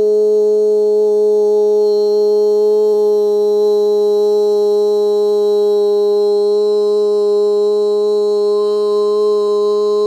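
A man's voice holding one long, steady toned note at a single pitch, sustained without a break.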